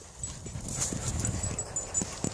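Dogs moving about close by on grass: soft rustling and scuffing with a few faint ticks, and a low rumble on the microphone in the middle.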